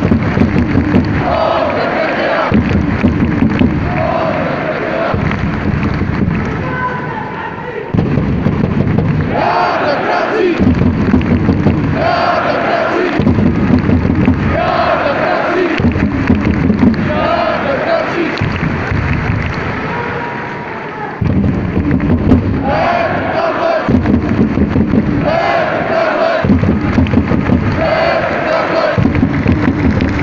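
Large crowd of ice hockey fans chanting loudly in unison, repeating a short chant over and over in a steady rhythm. The chant sags twice and then comes back at full strength.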